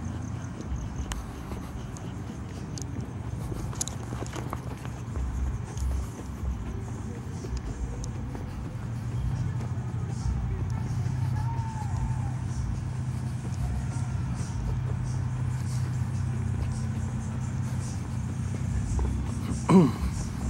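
Steady low hum of car engines running in a line of waiting cars, growing louder about halfway through, with a few faint clicks.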